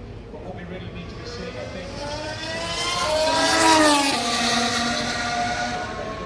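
A single Formula 1 car's turbocharged V6 approaching and passing close by. The engine note climbs in pitch and loudness, is loudest about four seconds in, then drops sharply in pitch as the car goes past and pulls away.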